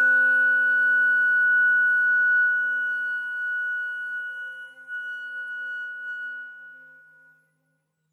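Flute and violin hold one long final note together, the high tone loudest. It dips briefly a little past halfway, then fades away and has ended about seven and a half seconds in.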